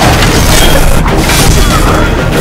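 Loud, dense action-film soundtrack: booming hits and crashes from a fight scene layered over music.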